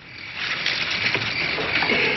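Night-time ambience of chirping crickets and croaking frogs, swelling up about half a second in and carrying on steadily.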